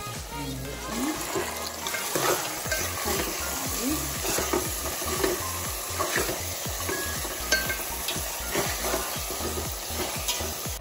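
Raw country chicken pieces sizzling in hot oil with onions in a kadai, stirred with a metal spoon that scrapes and clicks against the pot throughout.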